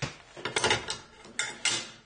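Small steel butt hinge being handled and set down on a steel plate: a quick run of light metallic clicks and clacks as its leaves move and it knocks against the metal.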